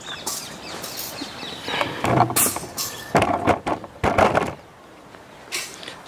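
Camera handling noise: rustling and scraping with several knocks as the camera is picked up and moved, loudest in the middle and dying down shortly before the end.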